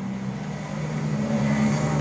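A steady low mechanical hum with a faint hiss behind it, swelling slightly louder through the pause.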